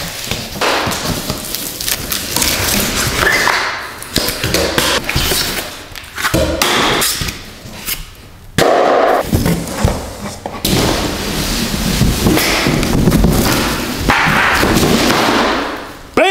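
Cardboard motorcycle shipping crate being pulled open, its panels scraped, torn and dropped, with repeated thuds.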